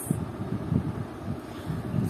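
Low, uneven rumble with soft bumps from movement close to the microphone as the painted card is put aside.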